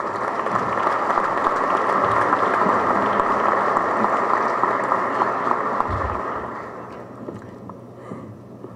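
Audience applause in a hall, building up over the first couple of seconds, holding steady, then dying away near the end.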